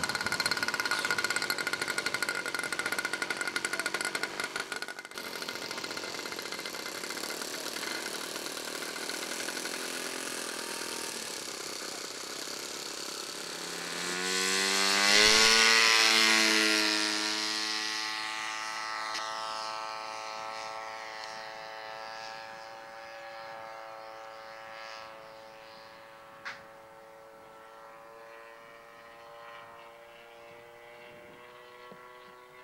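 The engine of a radio-controlled scale warbird model running at high power on its takeoff. It grows louder to a close pass about fifteen seconds in, with its pitch rising and then dropping, and then fades steadily as the model climbs away. There is a single sharp click near the end.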